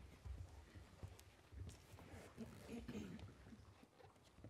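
Near silence in a studio just before an a cappella choir sings: faint shuffling and footsteps as the conductor and singers settle, with a faint voice about halfway through.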